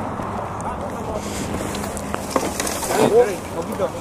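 Indistinct talk of several people in the background over a steady wash of wind and highway traffic noise, with a few small clicks.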